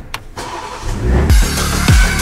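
Click of the start button, then a BMW 2 Series Coupe's engine cranking and firing up, rising in level. About a second in, music comes in over it with deep, falling bass-drum hits about every half second.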